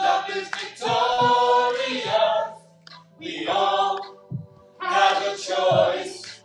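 A cappella group of four women singing together into handheld microphones, in short sung phrases with brief pauses between them.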